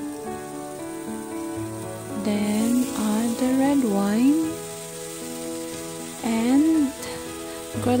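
Duck feet sizzling in a hot wok on full flame, just after Shaoxing rice wine has gone in and turned to steam, stirred with a metal spatula; the sizzle grows about two seconds in. Background music with a singing voice plays over it.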